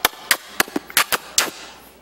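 A quick, irregular series of about seven loud kissing smacks made with the lips close to a headset microphone, mimicking someone kissing up, fading out about a second and a half in.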